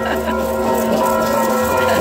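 Church bells ringing on and on, their tones overlapping into one steady ring at several pitches, over crowd noise.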